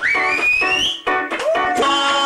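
Live music: strummed guitar chords under a man's voice that gives a high, rising shriek for about the first second, then glides up into a held sung note in the second half.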